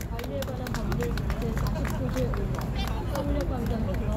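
Applause from a small crowd: irregular hand claps, with voices over them.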